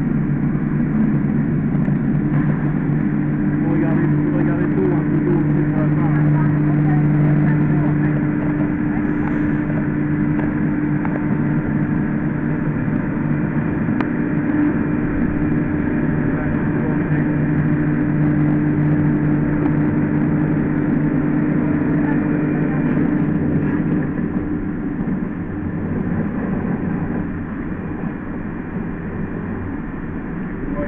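PVS 125 H micro-cut emulsifier, a 15 kW fine-cutting machine, running steadily under load while it emulsifies hollandaise sauce: a constant low motor drone that eases slightly in level about two-thirds of the way through.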